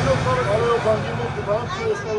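High-pitched voices of women and children talking and calling out, with one exclaiming "Oh" near the end.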